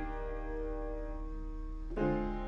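Soulful R&B-style piano chords played on a keyboard. One chord rings and slowly fades, and the next chord is struck right at the end.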